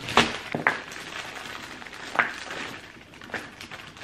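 Plastic produce bags crinkling as baby carrots are taken out and set down on a cutting board, with a few sharp taps scattered through the rustling.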